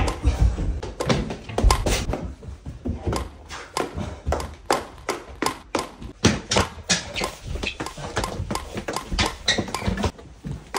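A rapid, irregular series of knocks and taps: running footsteps on stairs and floors, and paddles striking a birdie back and forth, over background music.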